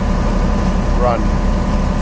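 Ship's engine running steadily, a low rumble heard on deck under way at sea.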